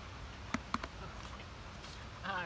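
Quiet outdoor background with a steady low rumble and a few sharp clicks, loudest about half a second in and again a quarter-second later.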